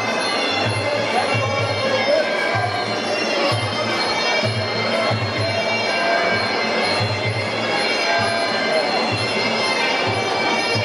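Sarama, the traditional Muay Thai fight music: a shrill reed pipe playing a continuous melody over repeated drum beats, with voices from the hall underneath.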